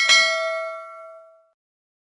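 Notification-bell sound effect: a click and a bright ding that rings on in several tones and fades out within about a second and a half.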